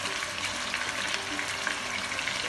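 Raw mutton pieces frying in hot oil in a karahi: a steady sizzle with many small crackles.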